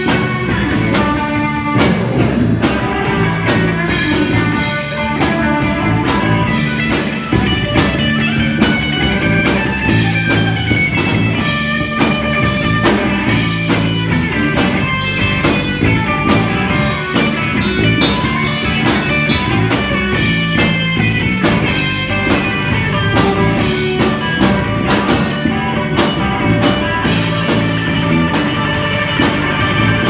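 Live rock band playing an instrumental passage: electric guitar and bass guitar over a drum kit keeping a steady beat.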